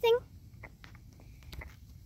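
The end of a child's rising spoken question, then a few faint, scattered clicks.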